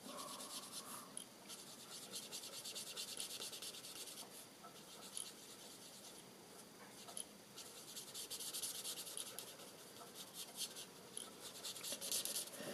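Felt-tip alcohol marker rubbing over cardstock as a small area is coloured in, a faint scratchy hiss that comes in spells of strokes with short pauses between.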